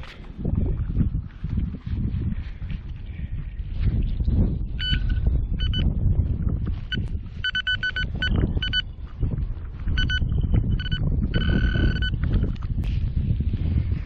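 Metal detector beeping over a buried metal target: short beeps of one high tone, starting about five seconds in and coming in bursts, some quick-fire. A low rumble runs underneath.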